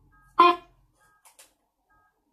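A single brief, chopped voice-like fragment from the Necrophonic ghost-box app about half a second in, with a faint fragment after it and faint short tone pips around it.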